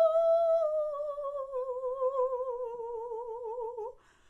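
A woman singing one long held note without accompaniment. The pitch sags slowly downward and the vibrato widens as the note grows quieter, before it stops right at the end.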